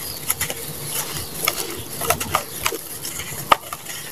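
Hands squeezing and crumbling wet grey-and-red sand over a basin of muddy water: gritty crackling with irregular soft splats as crumbs and clumps drop back in, and one sharper click about three and a half seconds in.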